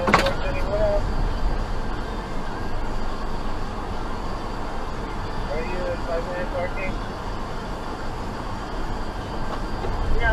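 A sharp crack as a tree branch strikes the front of a moving van, followed by steady road and engine noise heard from inside the cab as the van keeps driving fast.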